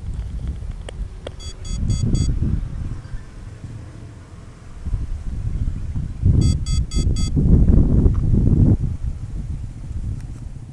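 Wind buffeting the microphone in gusts. Twice, a quick run of four electronic beeps, about one and a half seconds in and again about six seconds in.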